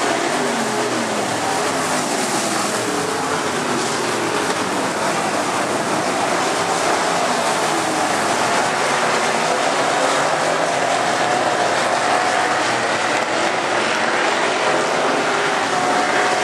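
Several dirt-track race car engines running together around the oval, their overlapping pitches rising and falling as the cars throttle on and off through the turns.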